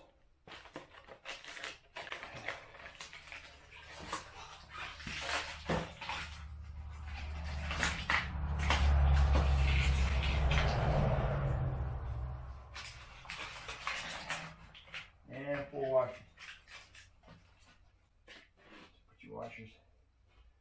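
Hardware being handled while a cart's wheels are fitted: the plastic parts bag rustling, and small metal clips and parts clicking and clinking. Midway a low rumble swells for several seconds and then fades.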